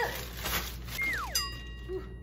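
A cartoon-style sound effect: a whistle-like tone slides down in pitch about halfway in, followed by a second falling slide and a held ringing tone, after a brief rustle at the start.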